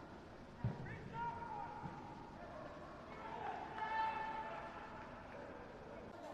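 Footballers' shouted calls on the pitch, short and scattered, the loudest about four seconds in, with a single sharp thump a little over half a second in.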